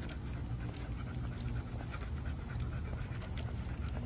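A pit-bull-type dog panting as it walks, over a steady low rumble, with frequent short clicks throughout.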